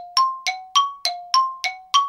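Bell-like ding sound effect: seven short struck notes, about three a second, alternating between a lower and a higher pitch, each ringing briefly. The last note rings slightly longer.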